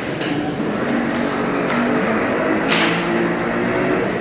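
Indistinct voices talking at low volume in a room, with a short rustle about three seconds in.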